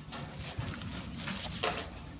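Pakhoy rooster pecking and scratching at gravelly dirt: a run of small ticks and scrapes, with one louder short sound near the end.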